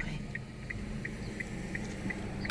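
Inside a moving car: a steady low engine and road hum, with a regular high-pitched tick about three times a second from the turn-signal indicator.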